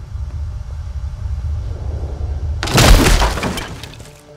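Low, steady droning score, then a loud crash about two and a half seconds in that fades out over about a second.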